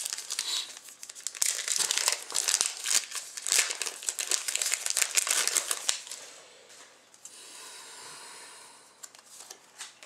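Foil card-pack wrapper crinkling and tearing as a pack of hockey cards is opened. From about six seconds in it turns to a quieter, steadier rustle of cards being slid and thumbed through.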